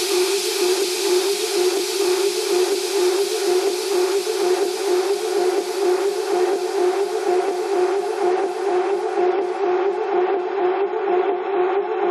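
Techno track in a breakdown: a sustained droning synth tone over a steady percussive tick about twice a second, with no bass or kick. The hissy top end is filtered away over the last few seconds.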